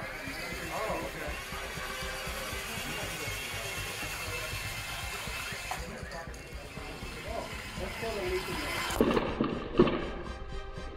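Steady outdoor hiss with indistinct voices and background music, and a couple of sharp knocks near the end.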